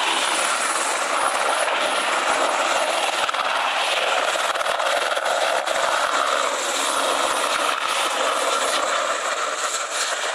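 Radio-controlled scale model helicopter flying low, its rotor and engine making a steady, loud sound.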